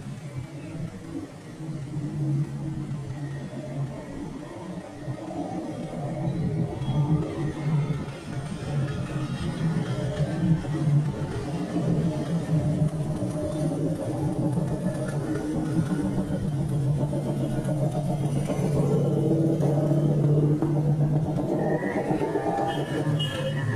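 Motorbikes and cars passing along a street, with music playing underneath.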